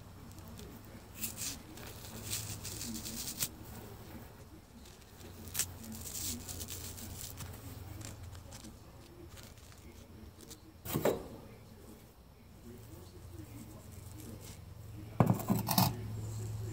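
Fingers picking and tearing at a tough silken cocoon, heard as faint scratching and soft clicks. There is a sharp knock about eleven seconds in and a cluster of louder knocks near the end.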